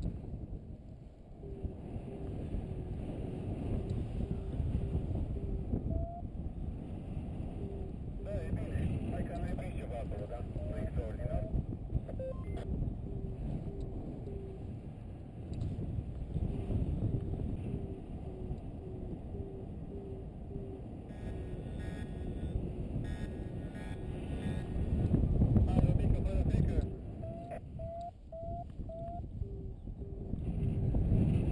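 Wind rushing over the microphone in paraglider flight, with a flight variometer beeping in short, regular tones; the beeps jump higher in pitch a few times, the vario's signal of a stronger climb in lift.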